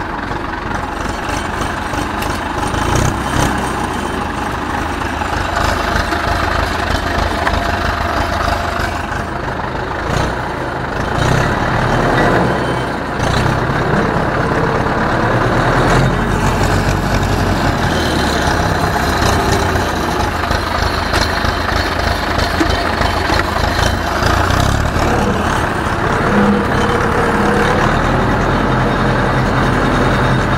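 Ursus C-360 tractor's four-cylinder diesel engine running steadily as the tractor moves slowly with a hitched potato harvester.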